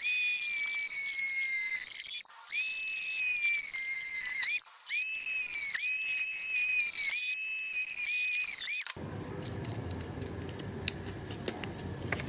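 Oscillating multi-tool plunge-cutting a hole into a thin wooden strip, with a high-pitched whine whose pitch wavers as the blade bites. The whine comes in three stretches with two very brief breaks and stops about nine seconds in. Only faint room noise and a few light clicks follow.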